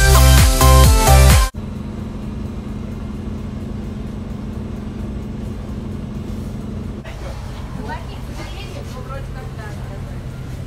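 Background music that cuts off suddenly about a second and a half in, giving way to the steady low hum of a city bus heard from inside the passenger cabin. Faint voices come in over the hum in the last few seconds.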